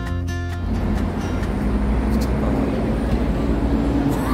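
Background music that stops about half a second in, followed by a steady low rumble of a car heard from inside the cabin.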